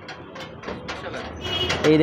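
Paper wrapper crinkling as fingers peel it back from a wrapped roll, a run of small, irregular crackles.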